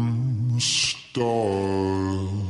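Slowed-down pop song recording: a male lead vocal sings long held notes over sparse backing. A short sung 's' hiss falls about halfway through, with a brief break just after it before the next held note.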